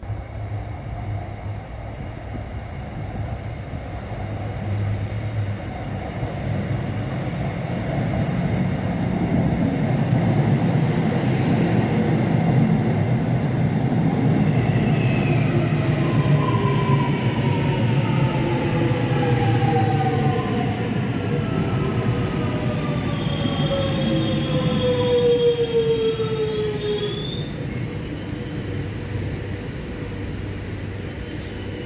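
Electric suburban train pulling into an underground station: a rumble that builds up, then a whine that falls steadily in pitch as the train slows. High brake squeal comes in over the last few seconds before it stops, and the noise then dies back.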